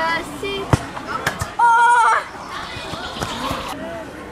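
Children calling and shouting, the loudest a held, high call about halfway through. A couple of sharp knocks come about a second in.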